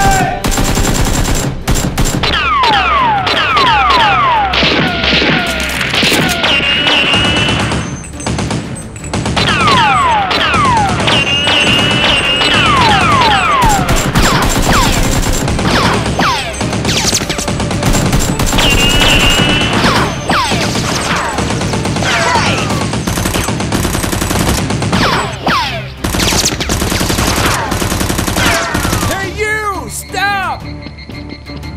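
Rapid automatic gunfire sound effects in long, nearly continuous bursts, with many short falling whistles among the shots, over background music.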